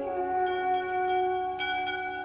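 An alphorn holding one long, steady note, just after a quick run of changing notes.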